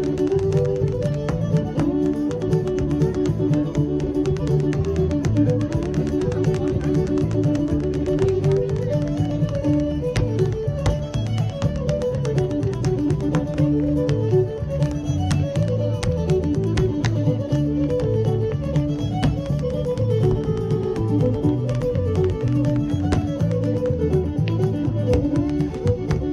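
Lively Irish dance tune led by a fiddle over a steady, driving beat. It is mixed with the sharp clicks of hard-shoe steps on the stage.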